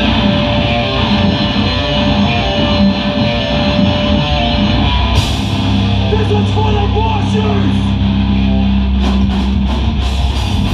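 Hardcore band playing live through a club PA: loud distorted guitars and bass with drums, the cymbals coming in hard about five seconds in.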